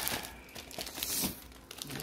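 Plastic wrapping crinkling and rustling in irregular bursts as plastic-sleeved graded comic slabs are lifted and handled out of a bubble-wrap-packed cardboard box, loudest about a second in.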